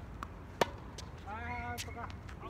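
A single sharp pop of a tennis ball on a racket strings about half a second in, after a fainter tap. Near the end comes a short held call in a person's voice.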